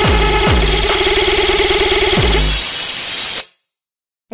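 Jumpstyle/hardstyle techno track: a hard kick drum with a falling-pitch tail hits about two and a half times a second, then drops out about a second in, leaving a buzzing synth, a hiss of noise and a single kick. About three and a half seconds in, the music cuts to silence.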